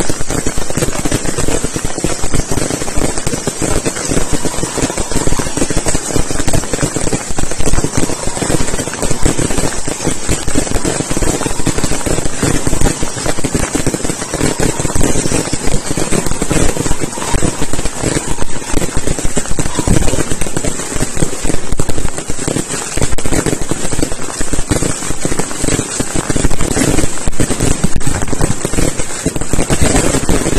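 Fireworks display: aerial shells bursting overhead in a dense, unbroken barrage, many loud bangs a second with no pause.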